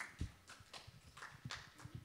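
Faint footsteps on a stage: a soft thud about a quarter second in, then light, irregular steps.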